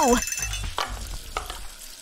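Wet, soapy hands rubbing and squishing a bar of soap during hand washing: a soft wet hiss with a few small clicks, fading away toward the end.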